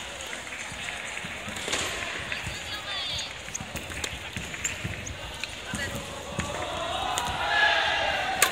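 Scattered thuds and light knocks on a wooden gymnasium floor from sports chanbara bouts: bare-foot footfalls and padded-sword strikes, over the chatter of many voices in the hall, which grows louder near the end.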